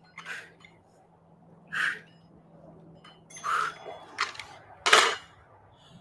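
A woman's short forced exhales, about one every one and a half seconds, in time with overhead dumbbell presses. Near the end comes a sharp knock as the dumbbells are set down on the exercise mat.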